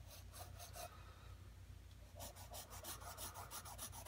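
Graphite pencil drawing on toned tan sketch paper: faint, quick, short scratchy strokes. There is a run of them in the first second and another from about two seconds in. These are individual strands of hair being laid in.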